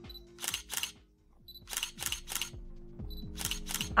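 Camera shutter clicking: three quick double clicks, each pair well over a second apart, over quiet background music.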